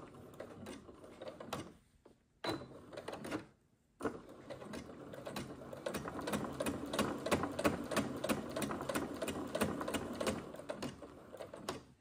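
Electric household sewing machine stitching through folded fabric: a fast, even run of needle-stroke clicks. It starts and stops twice in the first four seconds, then runs steadily until just before the end.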